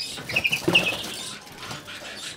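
Captive greenfinches in an aviary flight: a few short, high chirps in the first second, with the flutter of wings as a bird flies at a nest box.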